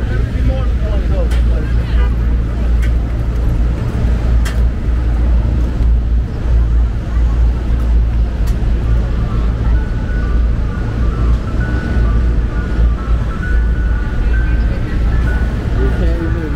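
Busy city street ambience: a steady low rumble of traffic passing, with voices of passersby and a few sharp clicks.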